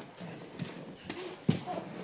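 Irregular taps and knocks on a hardwood floor as a baby crawls, his hands slapping the boards, with one louder thump about one and a half seconds in.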